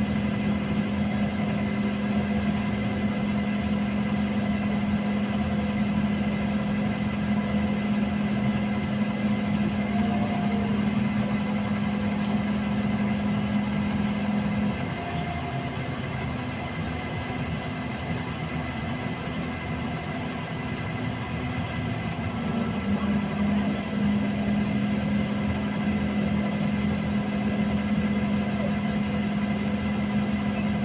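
Heavy-vehicle diesel engine idling steadily, with a strong low hum. The hum weakens for several seconds about halfway through, then comes back.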